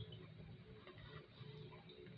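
Near silence: faint small ticks and rustles of hands handling a ribbon bow on a gift box, over a steady low hum.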